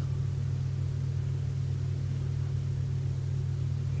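A steady low hum with no other sound.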